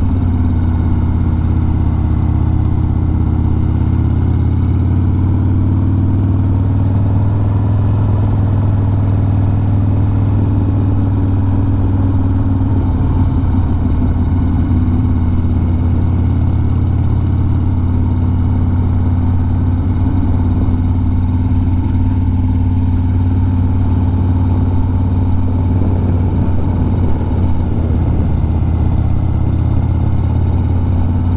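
1991 Harley-Davidson Dyna Glide Sturgis's Evolution V-twin engine running steadily at a cruising pace, heard from the rider's seat.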